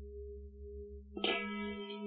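Giant hand-hammered Tibetan singing bowl (13.5 inch, note C#) humming with a steady deep tone, then struck with a wooden mallet just over a second in and ringing out with a bright spread of higher overtones over the deep hum.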